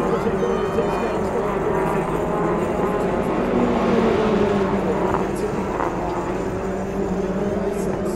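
TCR touring cars' turbocharged four-cylinder engines running on the circuit, growing louder to a peak about halfway through as cars pass, then easing. Indistinct voices are heard nearby.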